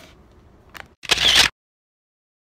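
Handling of the plastic bags of LEGO pieces: low rustling, a faint click, then a loud crinkling rustle about a second in that cuts off suddenly into silence.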